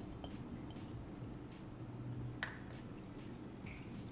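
Fork working canned tuna out of its tin into a glass bowl: faint handling with a few light clinks of metal on tin and glass, the sharpest about two and a half seconds in.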